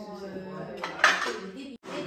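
Cutlery and plates clinking at a dining table, with a sharp clink about a second in, over low voices.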